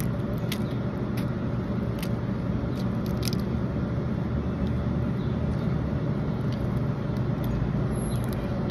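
Small sharp clicks and crackles of a cooked crab's shell being broken apart by hand as the meat is picked out, most of them in the first few seconds, over a steady low background rumble.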